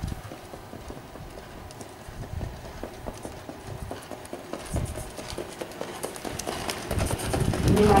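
Hoofbeats of a trotting harness horse pulling a sulky over a dirt track, a steady run of beats that grows louder as the horse comes closer. A man's voice comes in near the end.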